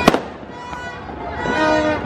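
A single sharp firecracker bang right at the start, set off in the street for the New Year.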